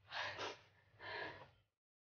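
A woman crying: two gasping sobs, the second about a second after the first.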